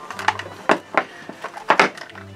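Hard plastic toy capsule (a Zuru 5 Surprise ball) being pried open by hand: a few sharp plastic clicks and snaps, with a quick pair near the end.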